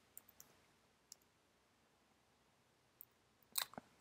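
A few faint computer keyboard keystrokes: soft clicks in quick succession near the start and one more about a second in, over near silence, with a brief, slightly louder rustle just before the end.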